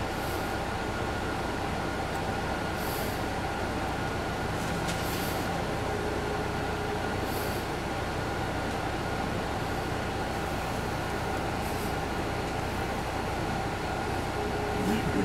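Steady running noise inside a 2002 MCI D4000 coach bus on the move: the drone of its Detroit Diesel Series 60 engine and road noise, with a faint steady whine. A few short hisses of air come through now and then.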